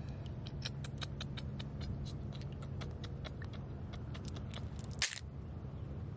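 Shallow water trickling over sand and mud, with many small irregular ticks and drips and one sharper click about five seconds in.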